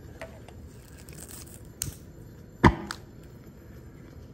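Magnesium powder reacting with concentrated sulfuric acid in a glass graduated cylinder as it gives off hydrogen: faint fizzing with a few sharp crackles and one louder pop with a short ring about two and a half seconds in.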